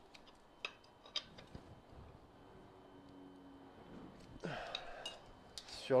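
A few light, sharp metallic clicks from hand tools being handled on a motorcycle engine during a valve clearance check, over a quiet workshop background.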